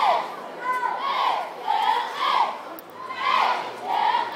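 A cheerleading squad shouting a cheer in unison, in rhythmic phrases about once a second.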